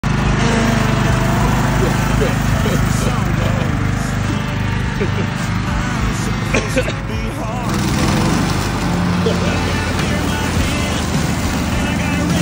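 John Deere riding lawn mower running steadily, its engine and spinning deck blades chewing through dry fallen leaves. A laugh breaks in about five seconds in.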